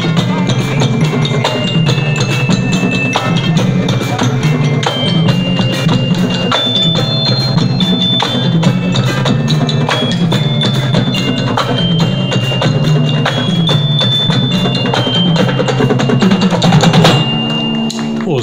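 Marching percussion band playing live: a steady beat of drums with timpani under it, while marimba and glockenspiel carry a high, bell-like tune.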